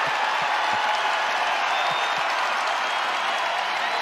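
Arena crowd at a college basketball game cheering and applauding, a steady wash of noise that holds level throughout.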